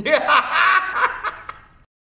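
A short bout of giggling laughter lasting a little under two seconds, loudest in its first second and trailing off.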